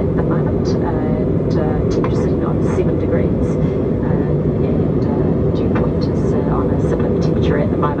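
Steady cabin roar of an Airbus A321neo in the climb, engine and airflow noise heard from a window seat inside the cabin. A voice is faintly heard over it at times.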